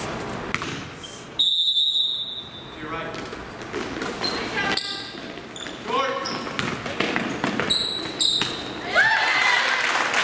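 A referee's whistle blows one sustained blast about a second and a half in, at the opening tip-off. Then come live-play gym sounds: a basketball bouncing on the hardwood floor, short squeaks and spectators' voices.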